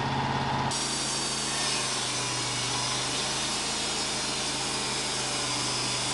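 Wood-Mizer LT35 band sawmill running at speed: a steady hissing whir over a constant low hum from its engine and spinning band blade. Less than a second in, a deeper engine hum gives way abruptly to this sound.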